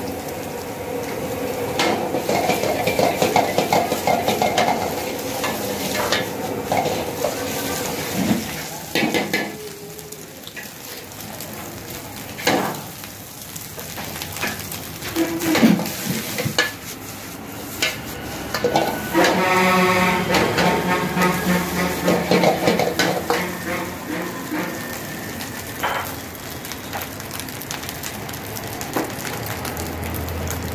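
Chicken and rice frying in a wok over a high gas flame, sizzling steadily while a metal ladle stirs and scrapes it, with repeated clanks of ladle on wok.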